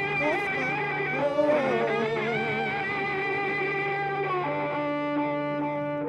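Live band music with electric cello and synths: wavering, vibrato-laden sustained notes over a steady low drone, changing to flatter held notes about four and a half seconds in.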